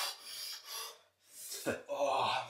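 A man's sharp, hissing breaths drawn and blown through clenched teeth, four or five in quick succession, ending in a short falling groan: the cold shock of lowering himself into an ice bath.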